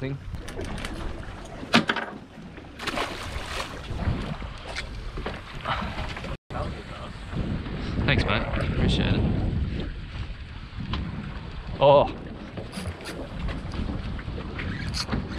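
Wind buffeting the microphone over the sound of open sea washing around a small boat, with a sharp knock about two seconds in.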